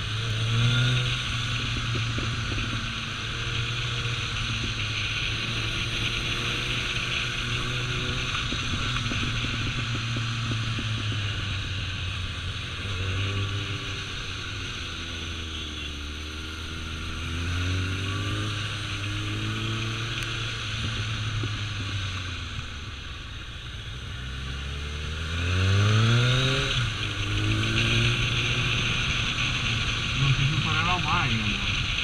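Kawasaki ZRX1200 inline-four motorcycle engine running under way, its pitch falling and rising with throttle through the bends. About 25 seconds in it revs up sharply to its loudest. A steady rush of wind and road noise runs along with it.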